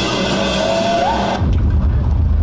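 Loud backing soundtrack for a stage performance. Music with a rising tone cuts off abruptly about one and a half seconds in and gives way to a deep, low rumble.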